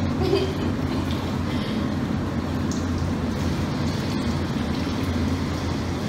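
Tap water running steadily into a stainless steel kitchen sink as raw chicken pieces are rinsed under the stream, over a low steady rumble.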